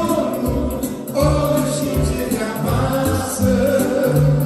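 Live gospel song: a man singing, accompanied by a piano accordion and an electronic keyboard, with held melody notes over a bass line that moves in an even rhythm.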